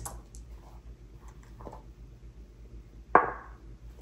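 A six-sided die being rolled: a few faint handling clicks, then one sharp knock about three seconds in, with a short ring after it.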